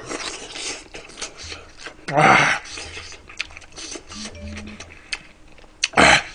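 A man chewing a mouthful of rice with braised pork and radish, with wet mouth clicks and smacks throughout. About two seconds in comes a short, loud, breathy vocal sound.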